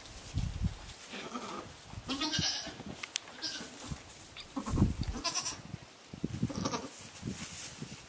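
Goats bleating: a few short bleats, about two, five and six and a half seconds in. Soft thumps and rustling in hay come in between; the loudest is a thump just before the second bleat.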